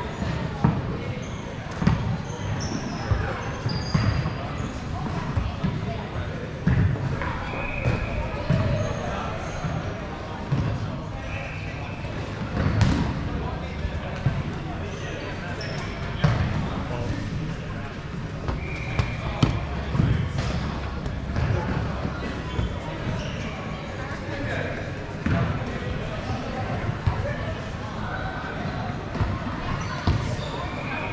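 Dodgeballs thudding irregularly off the court floor, players and netting during a dodgeball game, with short squeaks scattered among them.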